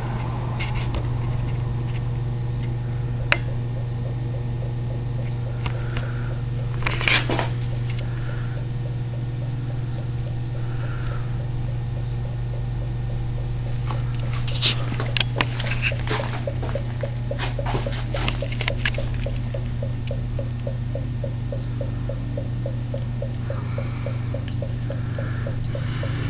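Homemade hydrogen electrolysis cell running after being plugged in: a steady low electrical hum from its power supply, with gas bubbling and fizzing through the baking-soda water. A few sharp clicks and taps sound over it, the clearest about 3 and 7 seconds in and several more around 15 to 19 seconds in.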